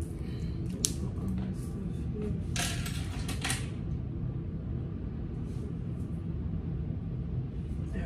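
Small handling noises as jewelry is taken off: one sharp little click just under a second in, then about a second of rustling, over a steady low room hum.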